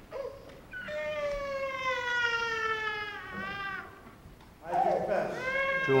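A small child's cry: a brief yelp, then one long wail of about three seconds that slides slowly down in pitch and wavers at the end.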